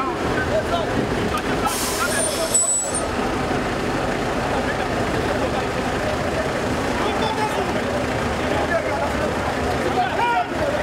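A mix of several voices talking over running vehicle engines in a street, with a short, loud hiss about two seconds in.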